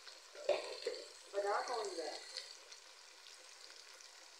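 Chopped onions, tomatoes and green chillies frying in hot oil in a metal pan, a faint steady sizzle, with a short knock of the slotted spoon against the pan about half a second in.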